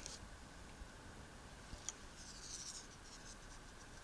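Faint handling sounds as a small weighing scoop is lifted off a digital pocket scale: a light click about two seconds in, then a brief scratchy rub, over quiet room tone.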